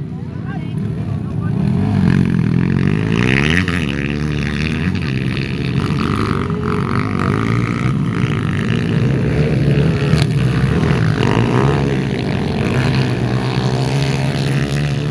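Dirt bike engines racing on a dirt track, their pitch rising and falling again and again as the riders work the throttle and gears.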